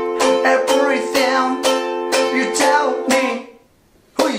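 Ukulele strummed in a steady rhythm on an F chord moving to C. About three seconds in the strumming stops and the last chord rings out and fades.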